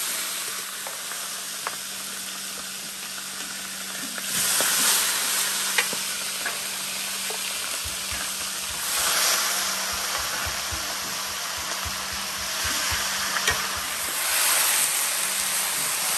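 Guinea fowl pieces browning in a large aluminium pot over a gas burner, sizzling and steaming as a metal spatula stirs them. The sizzle swells three times, at about 4, 9 and 15 seconds in, and the spatula clicks against the pot now and then.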